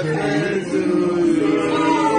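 A group of voices singing together, with long held notes that slide slowly in pitch.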